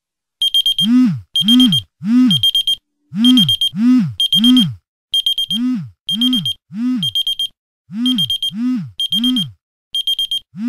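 An electronic alarm goes off about half a second in, beeping in sets of three, four sets in all. Each beep pairs a high, fast-pulsing tone with a low tone that swoops downward.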